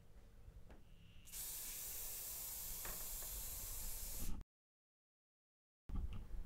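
Aerosol can spraying in one steady hiss of about three seconds, starting a little over a second in and cutting off suddenly.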